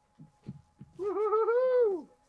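A person's drawn-out wordless exclamation, an "ooh"-like call about a second long with a wavering pitch, starting about a second in. A few faint soft knocks come before it.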